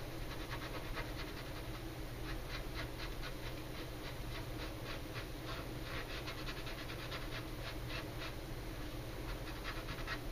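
Quick, short scraping and rubbing strokes of a small hand tool along a seam of a plastic model kit's body, several strokes a second in uneven bursts.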